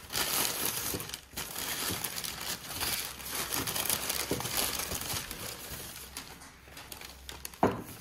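Packaging wrap crinkling and rustling as newly bought glasses are unwrapped by hand, in an irregular run of crackles that tails off towards the end.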